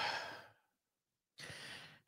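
A woman's long sigh into a close microphone, its breathy tail fading out about half a second in; a fainter breath follows near the end.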